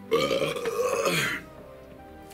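A man's single loud, gravelly burp lasting a little over a second, after gulping down a lot of mulled drink.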